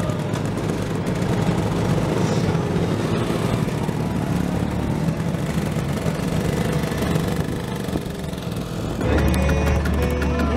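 Several motor scooters running and pulling away one after another, their small engines revving. Music comes in near the end.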